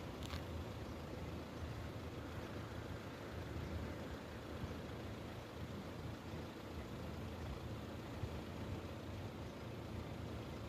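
Steady low rumble of road vehicles idling while they wait at a railway level crossing, with a brief faint high squeak about a third of a second in.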